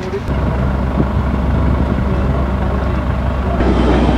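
A steady low rumble with people talking faintly behind it. Near the end the sound changes abruptly and a hiss comes in over the rumble.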